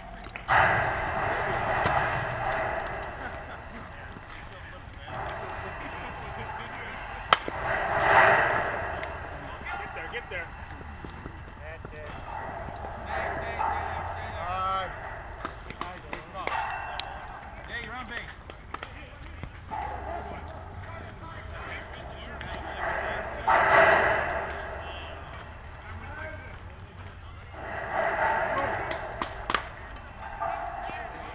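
Indistinct calling and chatter from players spread across a softball field, rising and falling in stretches of a few seconds. A single sharp crack, the loudest sound, comes about seven seconds in.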